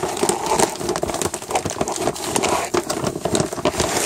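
Mylar storage bag and the plastic food packets inside it crinkling and crackling continuously as they are pushed and squashed down into the bag.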